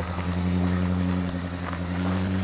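An engine running steadily, a low, even drone that holds without change.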